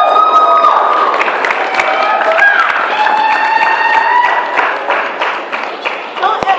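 Audience applauding and cheering at the end of a dance, dense clapping with several long held vocal calls over it, easing off a little near the end.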